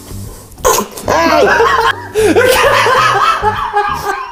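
A sudden sharp burst about half a second in, then loud laughter in swooping peals over background music.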